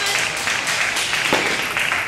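Clapping and crowd noise filling a table tennis hall, with a single sharp knock of a table tennis ball about a second and a half in.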